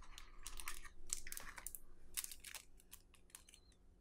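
Clear plastic sleeve around a cleaning cloth crinkling as it is handled: a quick run of small, faint crackles that thins out near the end.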